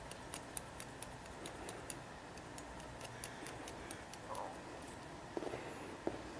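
Haircutting shears snipping wet hair over a comb in a quick, even run of crisp clicks, about four to five snips a second, thinning out to a few scattered snips in the second half.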